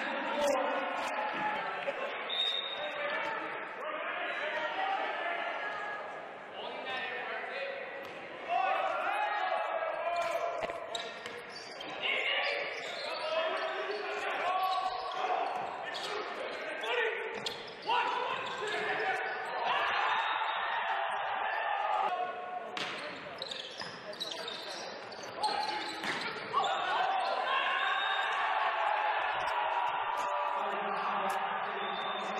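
Indoor volleyball game sound: a ball being struck and bouncing on the hard court, with players' and spectators' voices and shouts echoing in a large gymnasium.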